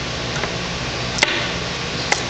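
Fingers and fingernails working a sticker off a PVC pipe cap: one sharp click about a second in and a fainter one before it, over a steady hiss and low hum.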